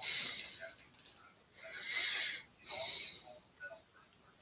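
A man breathing close to the microphone: three short, noisy breaths of air, roughly a second apart.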